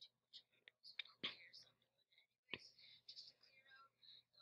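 A boy's voice, faint and thin, like whispering, with two sharp clicks about a second and two and a half seconds in.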